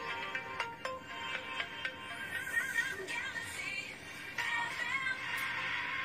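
Radio station jingle playing quietly under the mic: a quick run of chiming electronic notes, then a processed, sung melody.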